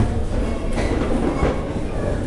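Low rumbling and knocking from boxers' footwork on the ring floor during a bout, with a sharp knock at the very start.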